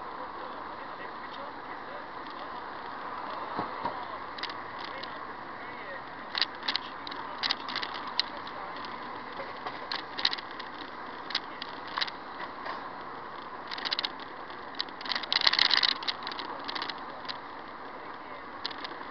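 Steady noise from a small camera on the move, with irregular short rattles and clicks. The clicks begin a few seconds in and come thickest in a burst about three-quarters of the way through.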